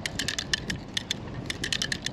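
DAM Quick 550 spinning reel cranked by hand, its anti-reverse lever clicking over the ratchet teeth in a quick, uneven run of sharp ticks, several a second.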